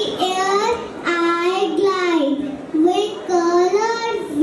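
A young girl singing into a microphone, one child's voice carried through the hall's sound system, holding long notes in a simple rising and falling tune.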